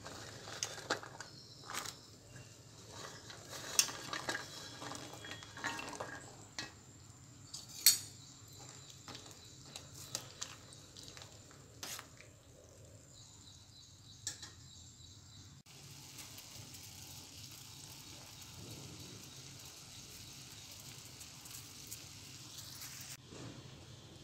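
Cut cluster beans boiling in water in a steel pot, stirred with a metal spoon that clinks now and then against the side of the pot. About sixteen seconds in this gives way to a faint steady hiss.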